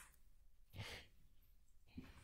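Near silence, with one faint breath out, like a soft sigh, about a second in.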